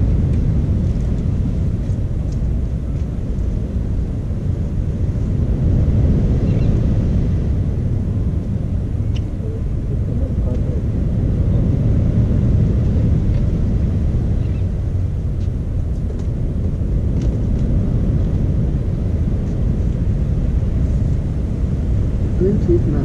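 Wind buffeting the camera microphone: a loud, steady low rumble with faint voices under it.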